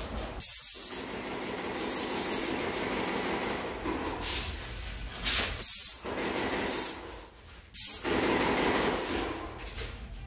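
Paint sprayer gun spraying paint in several short hissing bursts as the trigger is pulled and released, with a lower steady noise continuing between bursts.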